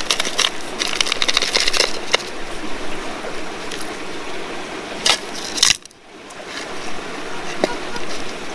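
Gravel and small stones rattling as they are poured back and forth between a plastic scoop and a hand over a metal detector coil, busiest in the first two seconds, with two short rattles later on. A brief zip signal from the metal detector comes near the end.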